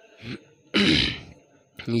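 A man clearing his throat: a short faint rasp, then a louder one about a second in.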